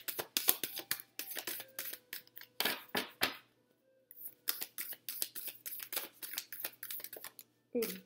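A deck of cards being shuffled by hand: quick runs of crisp flicks and slaps of card on card, with a short pause a little before the middle.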